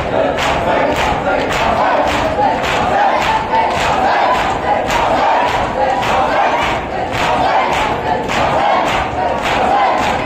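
Crowd of mourners doing matam, hands striking chests in unison a little over twice a second, with many men's voices chanting over the beat.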